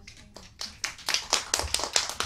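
A small group clapping in scattered, separate claps. The clapping starts a moment in and grows louder and denser.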